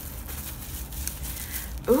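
Plastic bubble wrap rustling and crinkling faintly as it is handled and pulled off a wrapped dish; a woman's voice comes in near the end.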